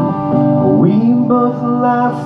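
Live acoustic guitar playing, with a man's singing voice coming in shortly after the start, amplified through a PA.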